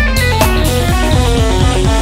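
Instrumental rock music led by guitar: a quick run of short notes over a steady bass line.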